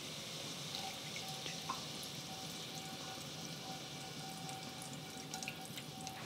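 Soy sauce just poured into hot shallot-and-garlic oil in a pan over low heat, sizzling faintly and steadily.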